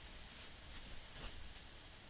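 Faint steady background hiss of the recording in a pause between speech, with two soft brief sounds, about half a second and a second and a quarter in.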